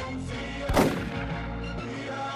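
A single rifle shot about three-quarters of a second in, over steady background music.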